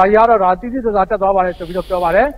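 A man speaking in Burmese, with a short hiss over his words near the end.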